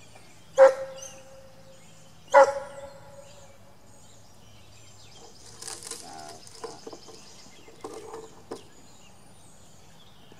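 Domestic fowl calling: two loud calls about two seconds apart, each starting sharply and holding one steady note, then softer short calls, with high chirping around the middle.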